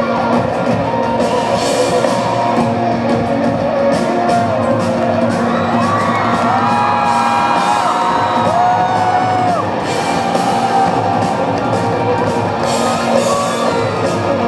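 Live band playing an instrumental intro on electric guitar and drums, with the audience whooping and cheering over it. A few long whoops stand out about halfway through.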